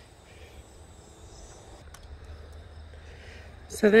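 Faint steady high-pitched trill of insects in a garden, running unchanged over a quiet outdoor background.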